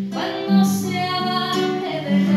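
A young girl singing solo over acoustic guitar accompaniment, starting a new sung phrase at the outset and holding long notes.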